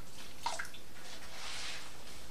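Indigo vat liquid trickling and dripping back into the vat as a freshly dipped dyed cloth is squeezed out over it. There is a short splash about half a second in and a longer run of liquid in the second half.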